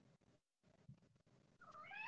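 Near silence, then near the end a faint rising vocal 'oh' as a surprised exclamation begins.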